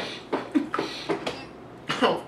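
Short, stifled bursts of coughing and laughter from two men, several in quick succession, set off by a mouthful of intensely sour candy.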